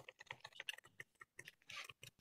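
Faint, irregular clicks of typing on a computer keyboard, with a slightly longer rustle near the end.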